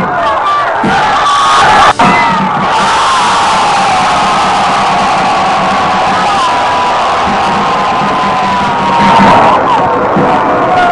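A large crowd of spectators cheering and shouting loudly, a dense continuous din with many rising and falling cries on top. There is a brief sudden drop about two seconds in.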